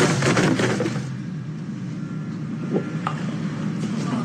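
Crash and clatter of goods knocked over as a body is thrown into them, dying away after about a second. A low steady drone follows, with a couple of faint knocks.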